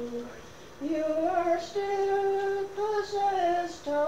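Unaccompanied solo voice singing a slow traditional song in Irish, with long held notes that bend slightly in pitch. There is a short break for breath about half a second in.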